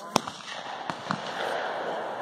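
A single gunshot, sharp and brief just after the start, followed by two much fainter clicks about a second in.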